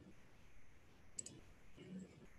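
A quick double click of a computer mouse, two sharp clicks close together about a second in, against near silence.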